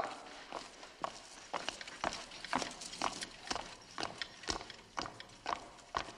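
Footsteps of several people walking in at a steady pace, sharp knocks about two a second.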